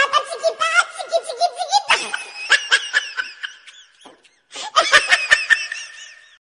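High-pitched laughter in quick, pulsing bursts, giggling and belly laughs, with a short break about four seconds in.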